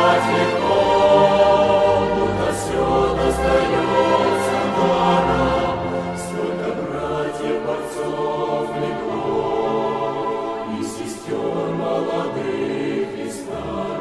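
A choir singing, heard as music throughout.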